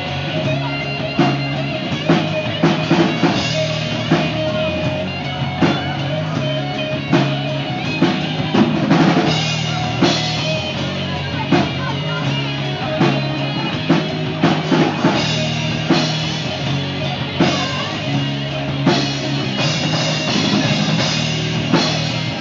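Live rock band playing an instrumental passage: drum kit, distorted electric guitars and bass guitar, with regular drum hits.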